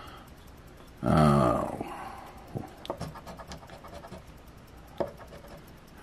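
A short voiced exhale about a second in, falling in pitch, followed by a coin scraping across a scratch-off lottery ticket, with a few small clicks.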